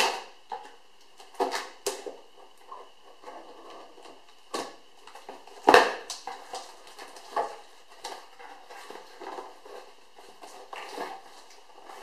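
Knife slicing and scraping through packing tape on a cardboard box, with irregular rustling and handling knocks of the box; the sharpest knock comes about halfway through.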